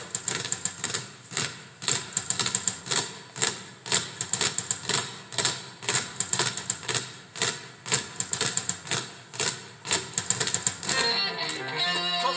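Basketballs bounced on a stage floor by a group of players in a rhythmic, repeating pattern, about two to three bounces a second, forming the beat of a song. Pitched music joins in about a second before the end.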